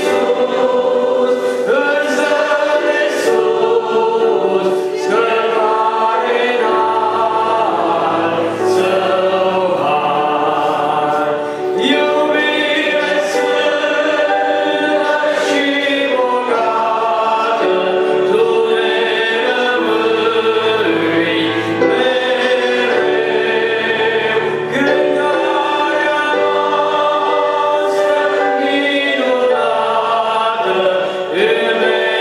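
A man singing a Christian gospel song into a microphone over musical accompaniment.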